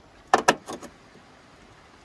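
Magnets clicking onto a van's steel rear door as a fabric window shade is pressed into place: two sharp clicks close together, then a few lighter ones.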